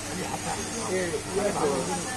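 Indistinct voices talking in the background over a steady hiss.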